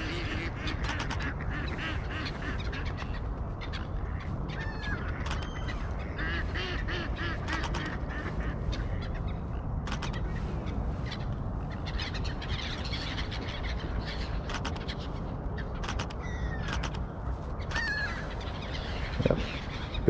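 A flock of waterfowl and gulls calling: ducks quacking and gulls crying, the calls short and scattered, over a steady low rumble, with occasional sharp clicks.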